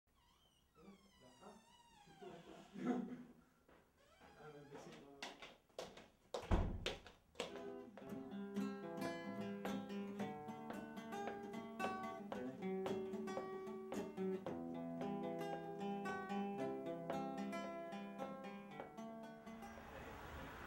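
A short laugh, a few knocks and one loud thump, then an acoustic guitar starts a plucked intro of evenly spaced ringing notes about a third of the way in.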